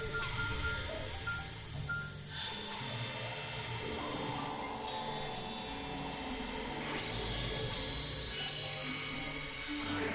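Experimental synthesizer music: layered sustained drones and steady tones over a hissing, noisy texture, with the mix shifting to new layers every few seconds.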